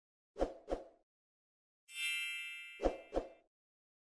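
Animated logo outro sound effects: two quick pops, then a bright ringing chime that fades over about a second, then two more quick pops.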